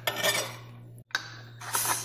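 Kitchen clatter: light metallic clinks and rubbing of utensils in the first half-second, then a short hiss near the end.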